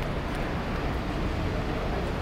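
Steady low rumble of city street traffic, engines and tyres, with no single vehicle standing out.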